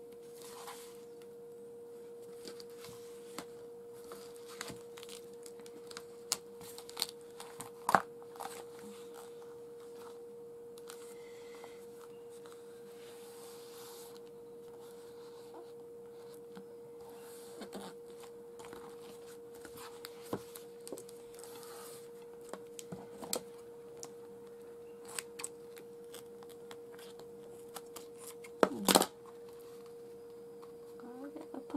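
Scattered rustles, taps and peeling sounds of flowery patterned adhesive tape being pulled and pressed down along the edge of a book cover, with a short, louder clatter of handling near the end. A steady faint hum runs underneath.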